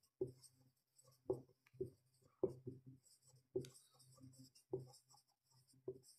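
Marker pen writing on a whiteboard: a string of short, faint strokes, roughly one a second.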